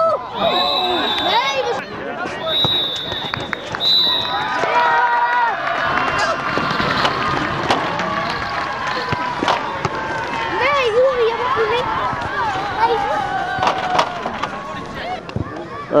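A referee's whistle blown three times, the first blast the longest, the usual signal for the end of a match. It is followed by players and spectators shouting and cheering together.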